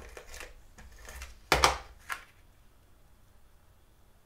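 Double-sided adhesive tape runner (Stampin' Up! SEAL) being drawn across card stock in a few short rasping strokes, the loudest about a second and a half in.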